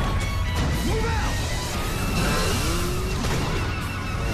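Film trailer soundtrack: loud, dense music mixed with crashing action sound effects, with a few sliding, wailing tones in the middle.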